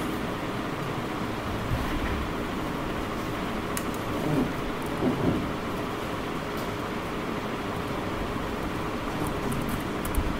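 Steady background hiss and room noise picked up by a desk microphone, with a few faint clicks.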